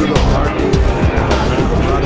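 Exhibition-hall background: loud music with heavy bass, mixed with the voices of people talking nearby.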